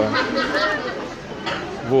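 Background chatter: several people talking at once, with no single clear voice.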